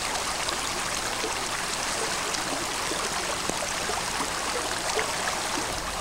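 Creek water flowing steadily, an even rushing sound with no change in level.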